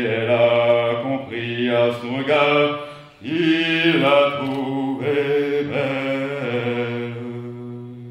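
A man singing unaccompanied in a low voice: long held notes in a slow, chant-like melody, phrase after phrase with short breaths between, fading near the end.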